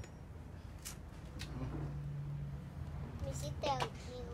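A child's voice speaking briefly near the end, over a low steady hum, with a couple of faint clicks earlier on.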